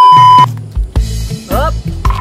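A loud, steady, high TV test-pattern beep for about half a second, the sound effect of a colour-bar glitch transition, followed by softer low bass beats.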